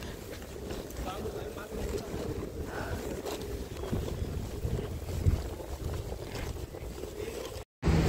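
Uneven low rumble of wind buffeting the microphone outdoors, with faint street sounds; it breaks off into a moment of silence near the end.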